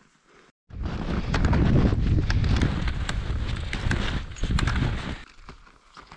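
Skis moving over snow, crunching and scraping, with a heavy rumble of wind on the camera microphone; it starts abruptly a little under a second in and dies away about a second before the end.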